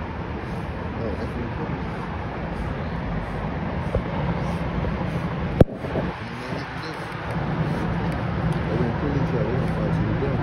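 Steady outdoor background noise with indistinct, voice-like sounds, and one sharp click a little past halfway.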